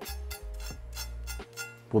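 A knife crunching through the crisp, pan-fried skin of fish fillets on a wooden cutting board, several short crackly cuts mostly in the first second. The crunch is the sign of well-crisped skin. Background music plays throughout.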